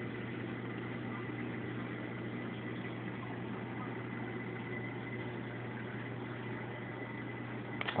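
Steady low electrical hum with a thin, steady high whine from running aquarium equipment, with a couple of small clicks near the end.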